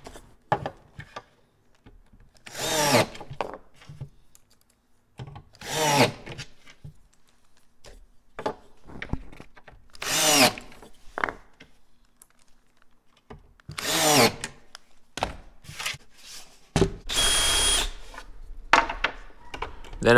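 Cordless drill-driver driving short Phillips screws into a plywood drawer to fasten Blum slide locking devices: four brief runs of the motor a few seconds apart, each rising and falling in pitch. Near the end a longer, steady drill run bores a quarter-inch hole in the drawer back.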